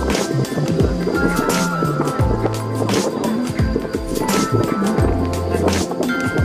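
Background music with a steady beat and a deep bass line.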